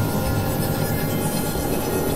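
Dense, noisy layer of several music tracks playing at once, heard as a steady rumbling drone with sustained low tones under a hiss, much like a passing train.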